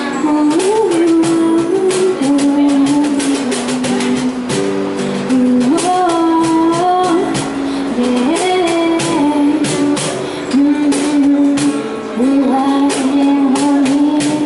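A woman singing in long phrases with held and sliding notes, over a strummed acoustic guitar and a steady cajon beat.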